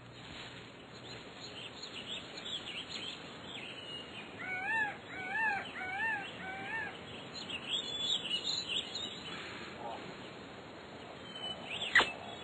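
Birds chirping over outdoor ambience, with a run of four rising-and-falling calls near the middle.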